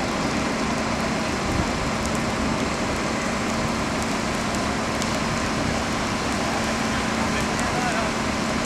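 Steady hum of a fire engine running beside burning straw, over a constant hiss with faint crackles from the fire. Distant voices come and go faintly.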